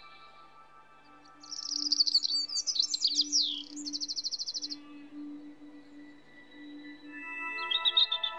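Soft ambient music of sustained tones, with songbird chirps and quick trills over it from about a second and a half in until nearly five seconds, and again starting near the end.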